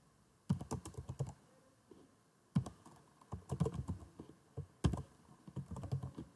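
Computer keyboard typing in about four short runs of quick keystrokes, with brief pauses between them.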